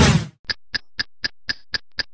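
A whoosh transition effect dying away, then a steady electronic ticking of about four ticks a second, typical of an animated logo intro.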